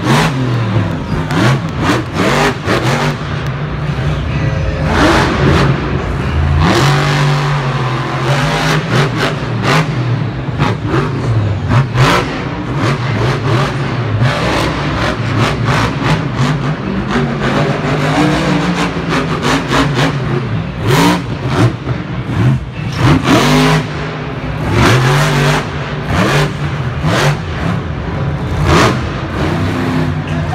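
Monster truck's supercharged V8 engine revving hard over and over during a freestyle run, its pitch rising and falling with each burst of throttle, cut through by sharp cracks.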